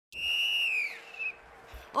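Referee's whistle blown in one long blast of about a second, its pitch sagging as it ends, followed by a short wavering chirp.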